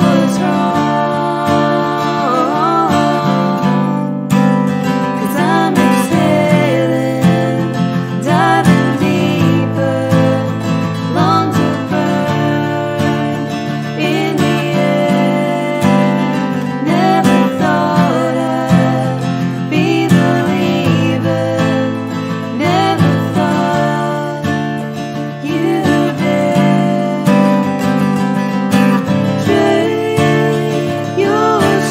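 Acoustic guitar strummed steadily while two women sing: a lead vocal with a backing harmony.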